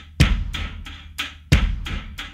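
Song intro played on drums alone: a heavy bass drum hit with a long low boom twice, about 1.3 seconds apart, with lighter drum hits between.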